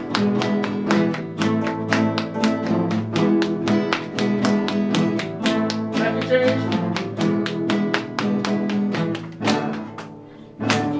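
A class ensemble of nylon-string classical guitars playing together in a steady rhythm: a bass line, strummed chords and a percussive tapped part.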